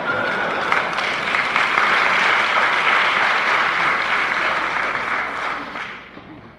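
Audience applauding, a steady dense clapping that dies away near the end.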